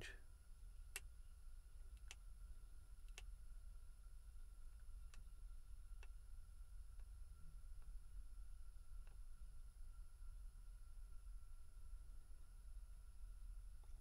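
Near silence: a faint low hum and a faint steady high whine, with a few faint ticks spaced unevenly about a second apart.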